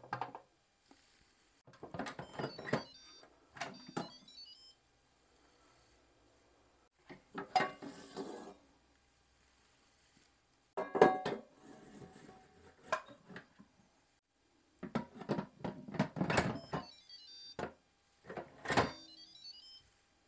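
Plastic lid of an electric pressure cooker being twisted off, handled and twisted back on: several bursts of clunks and scrapes separated by quiet gaps. Twice, about two seconds in and again near the end, a short run of stepped electronic beeps sounds with the handling.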